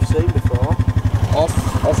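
Quad bike engine running with a steady, fast, low chugging beat.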